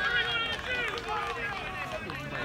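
Spectators chatting, several voices overlapping.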